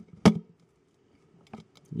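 A single sharp click about a quarter second in, followed by near silence and a few faint ticks near the end.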